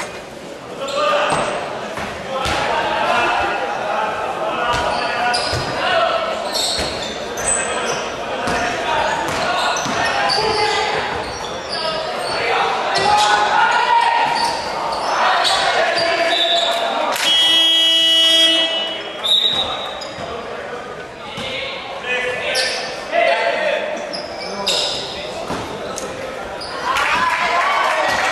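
Basketball game in a large sports hall: a basketball bouncing on the hardwood court amid players' and spectators' voices, with the hall's echo. About two thirds of the way through, a buzzer-like tone sounds for about two seconds.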